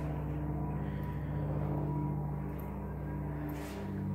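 A steady low engine drone made of several held tones, typical of an airplane passing over near an airport; it shifts slightly near the end.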